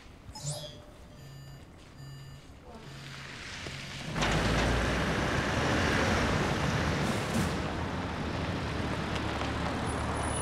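A mobile phone vibrating in short repeated buzzes, about one a second. About four seconds in, a louder vehicle engine and tyres set in and run steadily as an old off-road utility vehicle drives into the courtyard, and this is the loudest sound.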